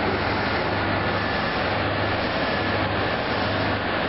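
Steady, loud rushing noise with a low hum underneath, unbroken throughout.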